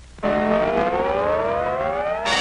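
A siren-like wail on an old cartoon soundtrack starts suddenly and glides steadily upward in pitch as one sustained tone.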